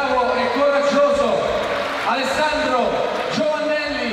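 A man's voice over the hall's loudspeakers, announcing in the ring, with some words drawn out long.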